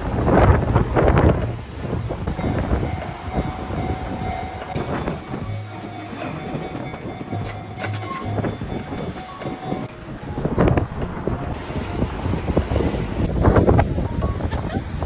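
Enoshima Electric Railway (Enoden) train passing close by at a level crossing, its wheels running over the rails.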